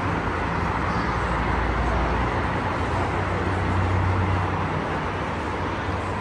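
Steady rumble of dense highway traffic passing below, a continuous wash of tyre and engine noise that grows a little louder around the middle.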